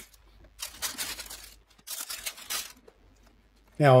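Baking paper crinkling and rustling in two bursts of about a second each, as it is pulled back from a sheet of melted HDPE bottle-cap plastic.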